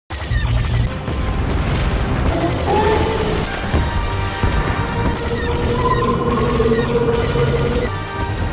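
Film sound effects of explosions and a deep, continuous rumble, cutting in suddenly out of silence, with music playing over them.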